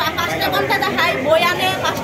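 A woman speaking Bengali, with other voices chattering in the background.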